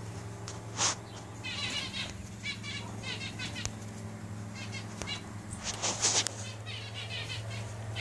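Birds chirping in short repeated phrases in the background, over a low steady hum. Two brief rustling noises, about a second in and around six seconds.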